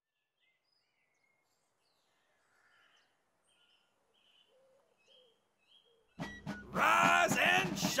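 Faint, sparse bird chirps over quiet garden ambience. About six seconds in, a sudden loud clatter, then a man shouting.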